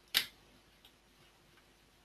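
A single sharp click of a computer mouse button, then a few faint ticks.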